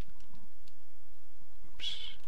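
A few faint clicks, then a brief, high-pitched voice-like sound just before the end.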